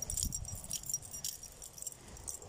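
Metal dog tag and leash clip jingling in light, irregular clinks as a dog walks on its leash, over a low rumble.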